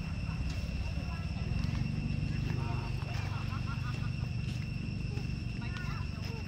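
Indistinct voices of people talking in the distance, over a steady low rumble and a steady high-pitched whine.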